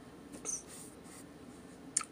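Low room tone with a brief soft rubbing noise about half a second in, as a hand brushes against the recording device. A short click comes just before the end.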